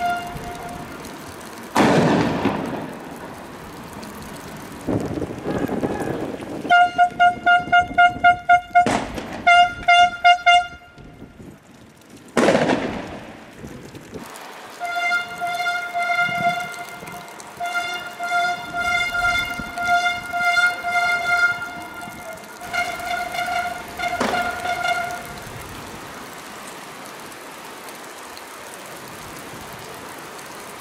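A police vehicle's horn sounds one fixed tone, first in rapid short pulses and then in longer wavering blasts. Several loud bangs with ringing echoes come in between, the loudest about two and twelve seconds in.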